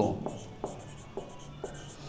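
Marker pen writing on a whiteboard: faint scratchy strokes with a few light taps as a word is written out.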